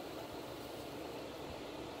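Steady low outdoor background noise with no distinct sounds standing out.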